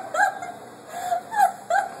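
A woman making a string of short, high whimpering and yelping sounds, each sliding up and down in pitch, like a dog whining.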